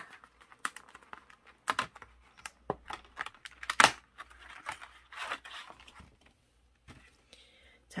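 Pre-cut cardstock being pushed and torn out of its template sheet: irregular paper tearing and crackling as the tabs give way, the loudest tear about halfway through.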